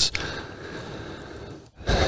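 A man's long inward breath, close to the microphone, between phrases: a soft steady hiss lasting just over a second.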